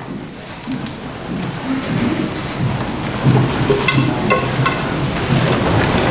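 A congregation shuffling forward in a line in a church: footsteps and rustling clothes, with a few faint clicks about four seconds in.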